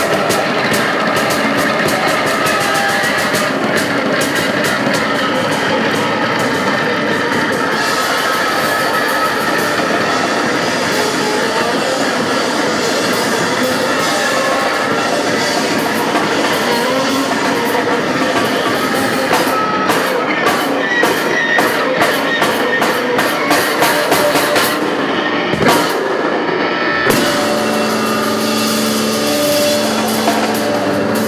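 Loud live rock from a drum kit and an electric bass guitar, with no singing. In the last few seconds the playing breaks into stop-start hits, then settles into held, ringing notes near the end.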